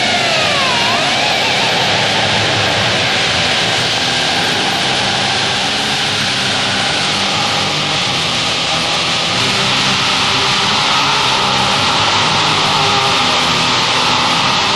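Black metal recording: a dense, loud wall of distorted guitars, with a swooping guitar bend in the first second.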